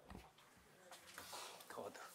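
Near silence: quiet room tone in a lecture hall with faint, indistinct voices.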